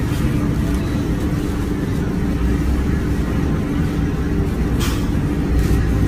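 Steady low mechanical rumble in the background, engine-like, with no speech over it.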